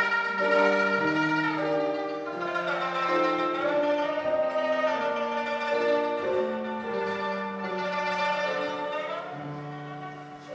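Shudraga, the Mongolian three-string long-necked plucked lute, playing a sustained melody with grand piano accompaniment. The melody slides between some notes, and the music grows quieter near the end.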